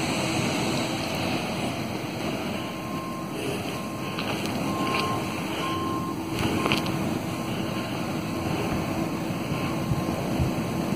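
Steady low rumble and hiss of outdoor background noise, with a faint high tone sounding in short, uneven beeps through the middle.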